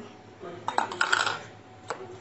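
Clinks and taps against a steel mixing bowl as chopped onion is tipped in from a plastic bowl and a spoon starts stirring the batter: a quick cluster of clatter just over half a second in, then one sharp click near the end.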